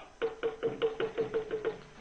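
Rhythmic percussion: a quick, even run of strokes on the same pitched note, stopping shortly before the end.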